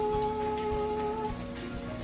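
Kitchen tap running into a stainless-steel sink as a plate is rinsed under it, with a melody holding one long note that fades about a second and a half in.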